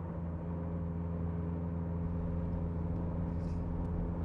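A car engine running at a steady speed as the car drives along: an even, low drone with no change in pitch.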